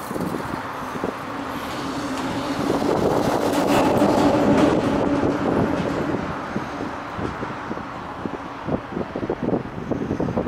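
A motor vehicle passing along the bridge roadway close by, its humming sound building to a peak about four to five seconds in and then fading away.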